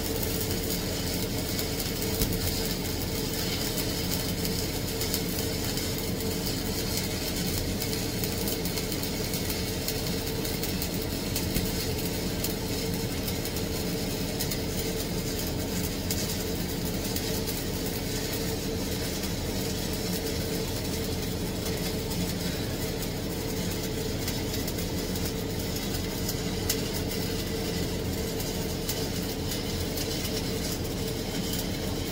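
Stick welding arc crackling steadily as a bead is run on a steel pipe test coupon, over a steady machine hum.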